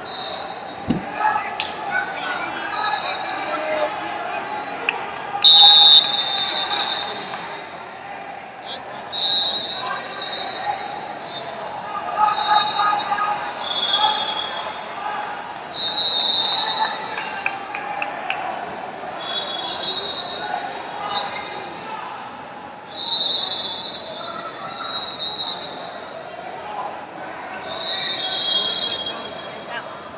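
Busy wrestling hall: a constant murmur of crowd voices, with short, shrill referee whistle blasts from the surrounding mats every few seconds. A loud whistle sounds about five and a half seconds in, as the period clock runs out and ends the bout. Scattered thuds and knocks from the mats come through the chatter.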